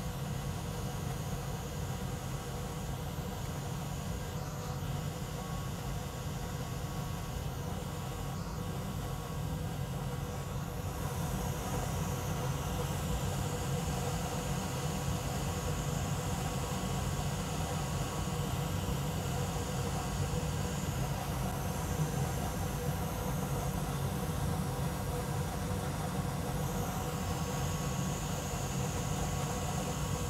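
Steady blowing and fan whir from a bench hot-air rework station and a fume extractor running while a chip is desoldered. It gets slightly louder about ten seconds in.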